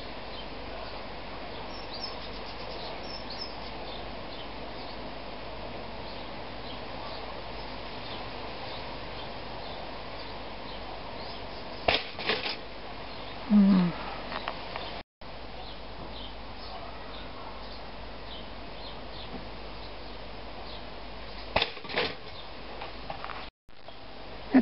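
Cheap pop-up toaster's spring-loaded carriage releasing with a sharp double clack about halfway through as two slices of toast pop up, lifted only partway rather than flung out as it usually is. Another short cluster of clicks near the end, over steady outdoor background noise.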